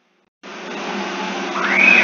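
A loud rushing noise starts suddenly about half a second in and swells, with a whine rising in pitch near the end, then stops.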